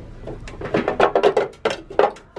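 Stacked pumpkin-shaped serving dishes knocking and clattering against one another as the top one is pulled from the stack, a quick run of clicks in the second half.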